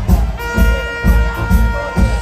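A live reggae band playing a heavy bass and drum groove, with one long held note coming in about half a second in.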